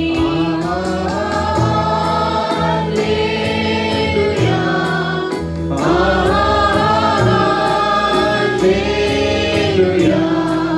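A small worship group of women and a man singing a Telugu Christian worship song together into microphones, in long held phrases. Instrumental accompaniment underneath keeps a steady beat.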